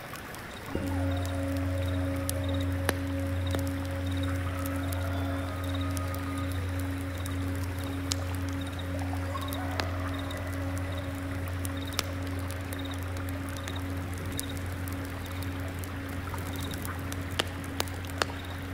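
A singing bowl is struck about a second in and rings on low and steady with a slow waver, its higher overtone fading out after several seconds. Soft crackles from a burning incense censer and a single insect chirping in an even rhythm sound beneath it.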